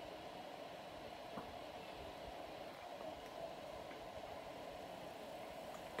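A Dyson AM06 bladeless desk fan on speed 1 and a Status tower fan running together on their low setting: a faint, steady whirr of moving air.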